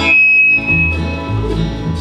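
Bluegrass band playing an instrumental passage: acoustic guitar and banjo picking over a pulsing upright doghouse bass. A single high note is held near the start.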